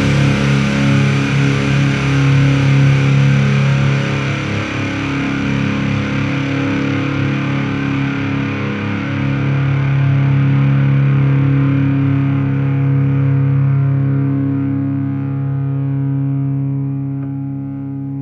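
Heavy rock music: distorted electric guitar holding sustained, ringing chords, with the treble fading away over the last few seconds.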